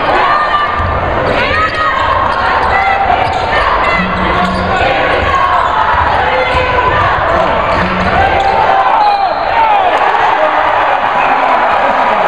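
Gym crowd noise, many voices shouting and calling at once, with a basketball being dribbled on the hardwood court until near the end.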